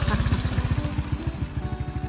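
Small motorcycle engine running at low speed with a rapid, even firing beat as the bike passes close by.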